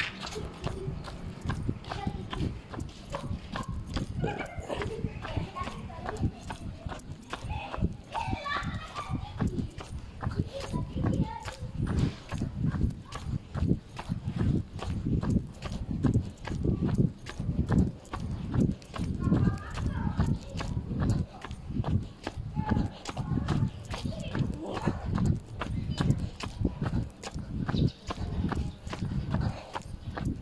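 Steady rhythm of low thumps, about one every three-quarters of a second, from a person walking with the phone jostling against their body, with indistinct voices at times.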